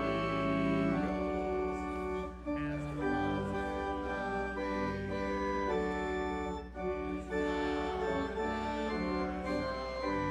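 Church organ playing slow, sustained chords that change about once a second.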